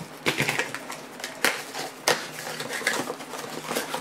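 Clicks, taps and rustling of sealed trading-card hobby boxes being handled on a table, with a couple of sharper knocks about one and a half and two seconds in.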